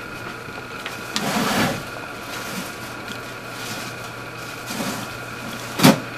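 Test leads and clips being handled at a workbench: a short rustle about a second in and a sharp click near the end, over a steady electrical hum with faint high whines.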